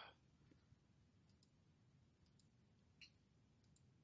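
Near silence with a few faint clicks from the computer being operated, the clearest one about three seconds in.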